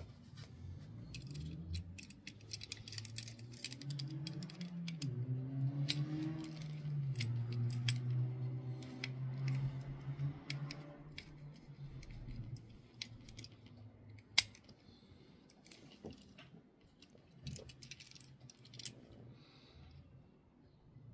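Small clicks and taps of a precision screwdriver and hands working a diecast model car apart, with one sharper click about fourteen seconds in. Under the clicks, from about a second in until about twelve seconds in, a person hums drawn-out notes in the background.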